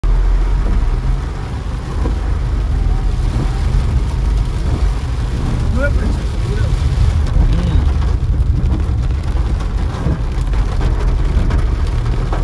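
Steady low rumble of a Nissan Magnite driving in heavy rain, heard from inside the cabin: engine, tyres on a wet road and rain on the car, with no clear rhythm.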